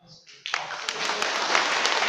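Audience applauding, with many hands clapping at once, starting about half a second in.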